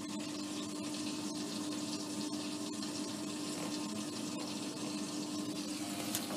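Hotpoint Aquarius WMA54 washing machine on its final spin cycle with the drum not turning: a steady hum with a constant sound of running water. The owner suspects worn motor brushes or a failed motor.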